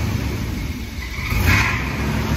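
1959 Ford Skyliner's V8 engine running, freshly started and still cold: a little cold-blooded. The sound swells briefly about one and a half seconds in.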